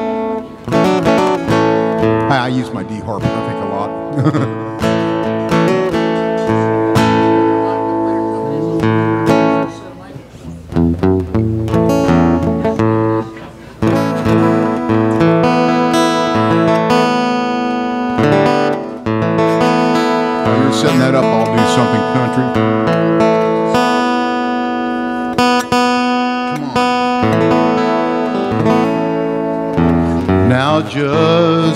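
Acoustic guitar playing an instrumental introduction, chords strummed and picked, with brief drops in level about ten and thirteen seconds in.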